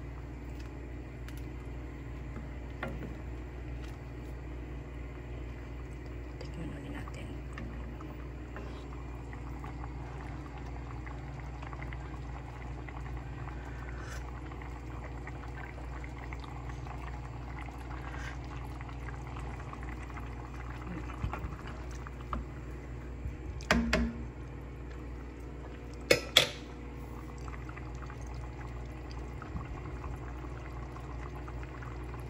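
Corn soup bubbling steadily at a boil in an enamelled cast-iron pot on a gas burner. A few soft knocks come about two-thirds of the way through, then two sharp clinks, the loudest sounds, a couple of seconds later.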